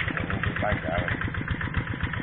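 A small engine running steadily with a rapid, even chugging beat.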